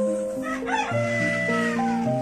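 A rooster crows once, starting about half a second in and ending in a long held note that falls away, over background music.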